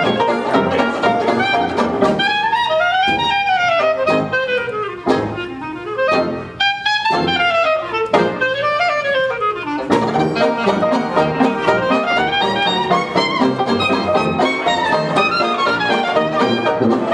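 Small hot-jazz band playing live, with horns and piano. About two seconds in, the ensemble thins to a solo horn line of swooping, bending phrases over lighter accompaniment, and the full band comes back in at about ten seconds.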